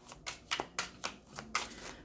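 A deck of tarot cards being shuffled by hand: a quick, uneven run of clicks, about six or seven a second.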